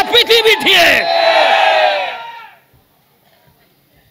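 A man's loud preaching voice over a microphone PA, running into a long drawn-out shout that fades away about two and a half seconds in.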